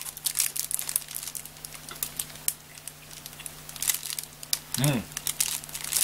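Plastic wrapper around a large bread roll crinkling in the hand in scattered short crackles.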